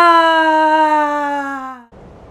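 A person's voice holding one long drawn-out cry for a character, pitched fairly high, slowly sinking and fading out, then cutting off just before the end.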